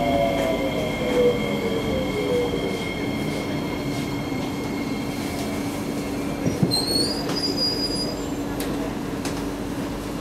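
SMRT Kawasaki C151B train pulling into a station: its motor whine falls in pitch over the first three seconds over the steady rumble of the car. About seven seconds in there is a brief high-pitched squeal as it comes to a stop, followed by a few light clicks.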